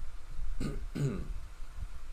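A man clearing his throat twice in quick succession, about half a second and one second in.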